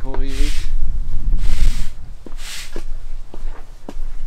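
Footsteps of someone walking along a muddy path, about one step a second, with wind rumbling on the microphone. A short voiced sound comes right at the start.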